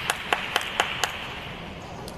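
Hand claps, about four a second, stopping about a second in, over a steady hiss that fades out soon after.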